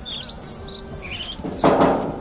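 Small birds chirping faintly in short high calls, then a brief rush of noise about one and a half seconds in.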